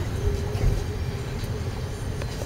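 Inside a moving vehicle: a steady low rumble of travel, with a steady mid-pitched hum over it.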